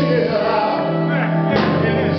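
A live blues band playing, with a man singing lead and a harmonica wailing over drums and electric guitar.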